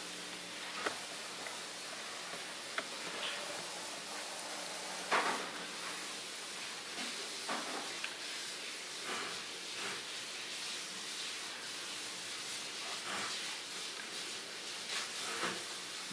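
Steady hiss of room tone in a small room, broken by several faint clicks and knocks, the loudest about five seconds in.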